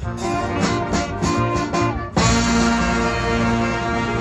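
Student jazz band of saxophones, trumpets, trombones, guitar and drums playing a swing tune: a run of short punched ensemble hits, then about two seconds in the whole band comes in on a long held chord.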